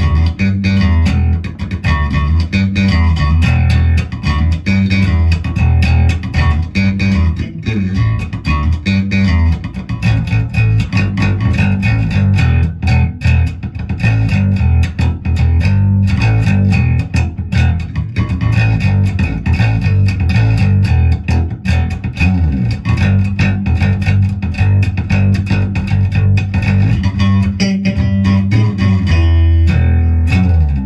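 Yamaha BB434 electric bass played fingerstyle: a busy, unbroken line of plucked low notes.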